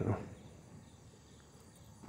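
Faint, steady high-pitched drone of insects in the background, just after a man's voice trails off.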